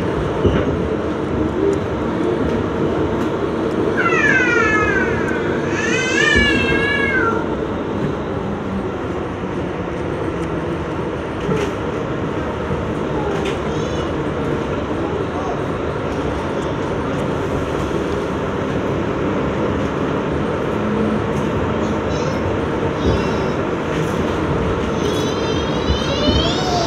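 R62A subway car running through a tunnel, with a steady rumble and rattle of wheels on track. Short high, wavering wails rise and fall over it a few seconds in and again near the end.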